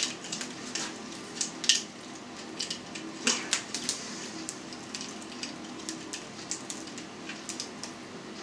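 Scattered soft clicks, taps and rustles of hands stretching elastic rubber meat netting over a ham held in a short length of pipe.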